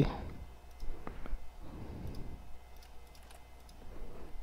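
Faint, irregular clicks of a computer mouse and keyboard typing, over a low steady hum.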